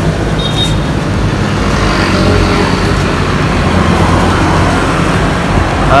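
A motor vehicle engine running with a steady low hum and a constant rushing noise over it.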